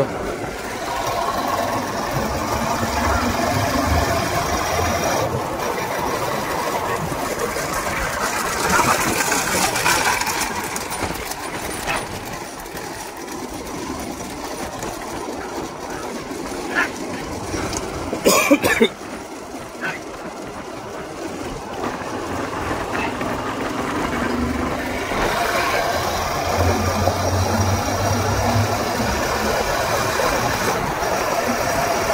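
Motorcycle engines running behind racing bullock carts, over a steady wash of wind and road noise, with a low engine hum rising early and again near the end. A short loud burst stands out about two-thirds of the way through.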